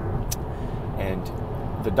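Steady low road and engine noise inside a moving car's cabin, with a short click about a third of a second in.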